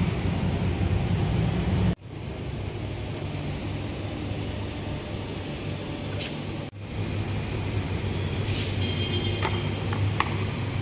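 Steady low rumbling background noise, broken by two sudden short dropouts about two and nearly seven seconds in, with a few light clicks near the end.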